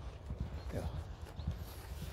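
Hoofbeats of a racehorse galloping on a frosty track, a quick run of dull thuds that fade as the horse moves away.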